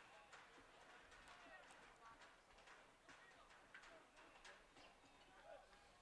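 Near silence: faint distant voices and a few scattered faint ticks from an open outdoor field.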